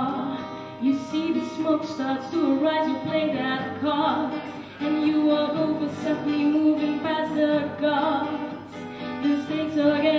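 A woman singing into a microphone, holding long notes, with acoustic guitar accompaniment.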